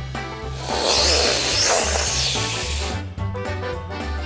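A snake's hiss, played as a sound effect: one long, loud hiss of about two and a half seconds, over children's background music with a steady bass line.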